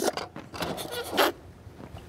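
A man blowing short puffs of breath into a rubber balloon, a few breathy blasts with pauses between them. A sharp click comes right at the start.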